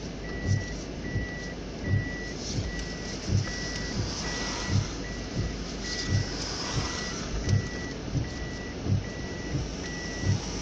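Inside a moving car on wet roads: a high electronic warning beep repeats at an even pace, a little more than once a second, over steady road noise, with low dull thumps about every second.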